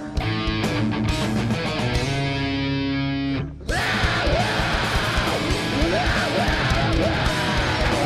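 Heavy metal band playing live with distorted electric guitar. A held guitar chord rings for about three and a half seconds, the sound drops out briefly, and then the full band with drums and cymbals comes back in.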